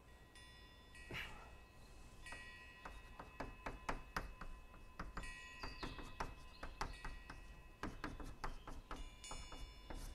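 Chalk writing on a blackboard: a faint, irregular string of taps and short scrapes from the chalk strokes, with brief high-pitched squeaks.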